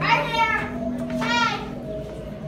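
Children's voices giving two high-pitched calls without words, each about half a second long, the second about a second after the first, over a steady low hum.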